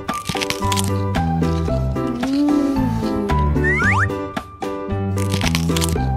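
Bouncy children's background music with crunching bites into a raw apple over it, the crunches heaviest in the first second and again a couple of seconds in.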